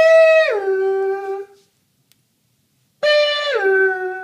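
A high human voice drawing out a two-note "ma-am", held on a high note and then stepping down to a lower one, twice, about three seconds apart, each call about a second and a half long.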